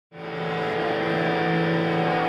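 Live rock band fading in: a sustained, ringing chord of held amplified guitar tones with no beat yet.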